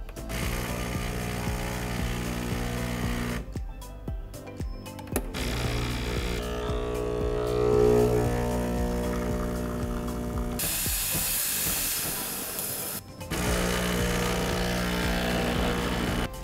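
Breville BES870 Barista Express espresso machine running noisily in three clips: a steady hum while it preheats, then the pump's buzz during a shot extraction, then a loud hiss after steaming followed by the buzz again. The owner puts the noise down to a small single-boiler machine packing in many functions.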